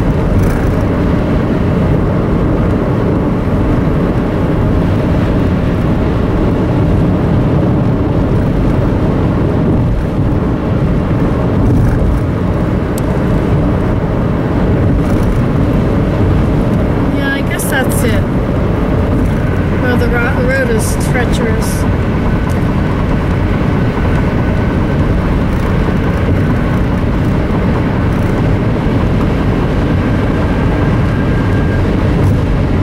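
Car cabin noise at highway speed: a steady rumble of tyres and engine. A few brief wavering tones come about two-thirds of the way through.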